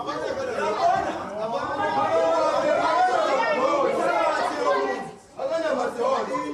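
Several voices talking over one another, breaking off briefly about five seconds in.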